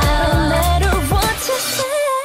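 K-pop song with a heavy bass-and-drum beat and sung vocals. Near the end the beat drops out, leaving a single held sung note that wavers.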